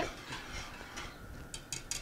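Wire whisk stirring brine in a pot as the salt and sugar dissolve, faint, with about three light ticks of the whisk against the pot near the end.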